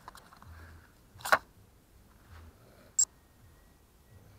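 Handling noise from a camera being moved and set down on the grass: faint rustling with a loud sharp click about a second and a quarter in and a shorter sharp click about three seconds in.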